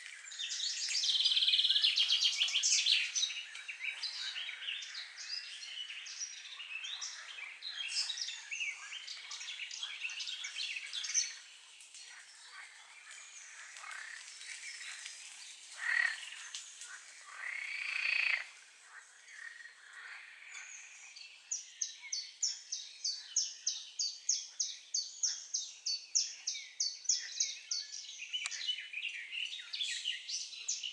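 Songbird chorus in spring woodland: many small birds chirping and singing over one another, loudest in the first few seconds. In the last third one bird repeats a short high call about twice a second.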